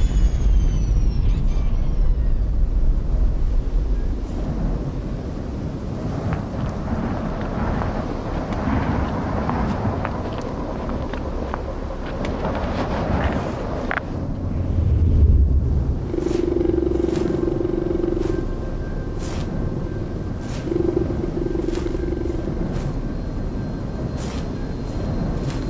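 Cinematic soundtrack: a deep rumble with falling whoosh sweeps and swelling textures. About two-thirds in, a held mid-pitched tone enters twice over a steady ticking, roughly one tick a second.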